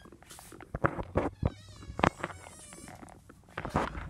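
Knocks and bumps of handling and steps, with a high wavering whine in the middle lasting about a second and a half.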